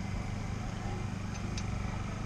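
A steady low engine hum runs on without change, with a faint tick or two near the end.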